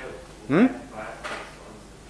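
A man's voice giving two short "mm-hmm" sounds, the first rising in pitch, in a reverberant classroom.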